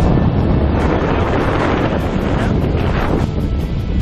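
Loud, steady wind rushing over a small camera microphone under an open parachute canopy as it turns.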